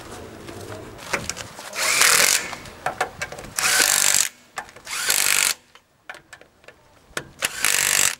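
Cordless power driver with a socket spinning a car's wheel bolts in four short bursts of about half a second each.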